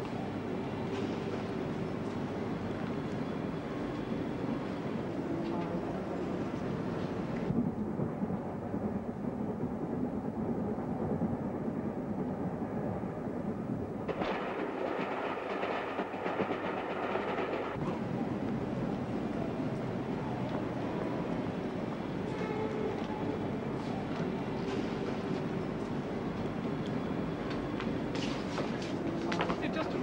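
A train running on rails, a continuous rumble with the clickety-clack of wheels over the track; the sound shifts in character about seven seconds in and again for a few seconds around the middle.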